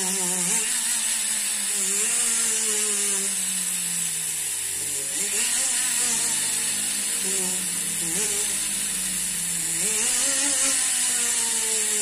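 Jeweller's rotary tool grinding at a gold ring's stone setting. The motor hums steadily under a constant high hiss, its pitch wavering and sliding up and down as its speed and load change, rising again about ten seconds in.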